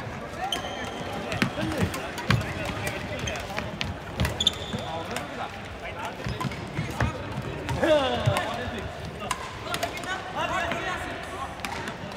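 Busy badminton hall: sharp racket strikes on shuttlecocks and footfalls, with sneakers squeaking on the wooden court floor and players' voices in the background.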